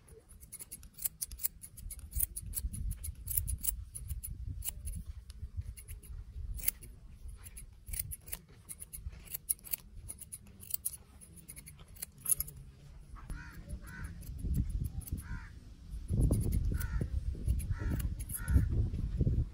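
Barber's scissors snipping hair along a comb: quick, irregular runs of crisp metallic snips. In the last few seconds a bird calls several times, against a low rumble that swells near the end.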